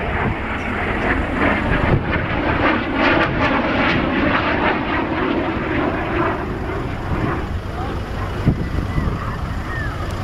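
Eurofighter Typhoon's twin EJ200 turbofan jet engines during a low inverted flypast. The jet noise builds to its loudest, with a crackle, about two to four seconds in, then eases off.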